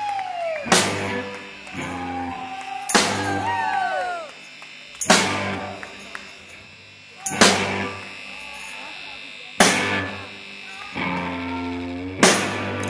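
Live rock music: a loud accent about every two seconds, drum and electric guitar chord struck together, five times. Each chord is left ringing and fades before the next hit.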